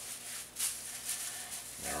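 Thin plastic shopping bag crinkling and rustling as it is twisted by hand into a tight rope, louder for a moment about half a second in.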